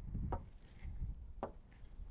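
A golf iron striking a ball off a turf mat gives a faint, short click about one and a half seconds in, with a weaker click earlier. A low rumble runs underneath.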